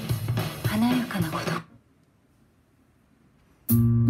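Yamaha NS-100M bookshelf loudspeakers playing a song with a voice in it. The song stops about a second and a half in, the room goes nearly silent for two seconds, and a new piece starts near the end with sustained chords.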